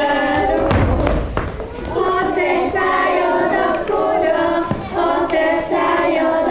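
A group of young children singing a folk song together in unison, with a couple of dull thumps, one about a second in and another near the end.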